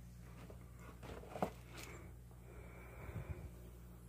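Faint handling of rubbish in a plastic-lined trash can as a plush toy is pulled out: a sharp click about a second and a half in and a few soft knocks about three seconds in, over a steady low hum.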